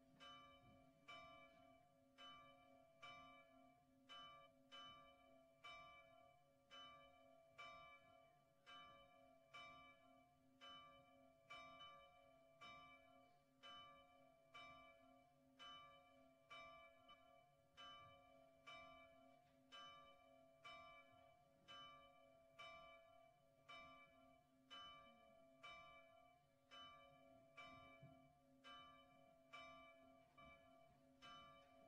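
Church bell tolling faintly, about one stroke a second, its ringing hum carrying on between strokes: the toll for a funeral.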